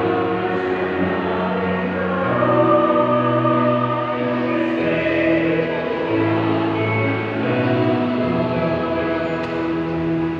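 Choir singing a slow Tagalog hymn, with long held notes in several voices at once.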